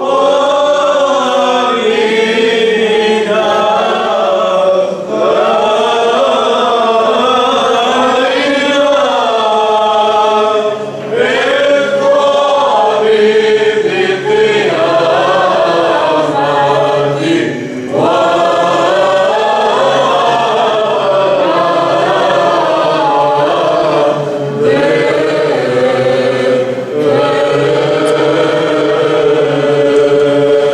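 A mixed choir of men's voices and a woman's voice chanting an Orthodox liturgical hymn together, phrase by phrase with short breaks for breath. From about the middle on, the melody runs over a steady low held note.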